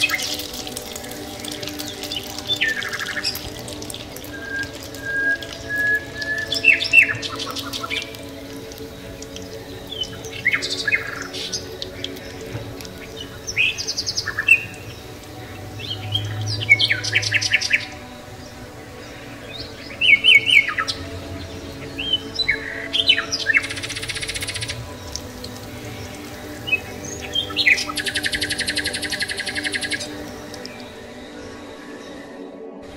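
Birds chirping and trilling over steady background music with sustained tones. Short calls come every second or two, with a longer buzzy trill near the end.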